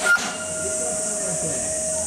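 Steady high-pitched drone of cicadas in summer trees, with a brief sharp knock just after the start.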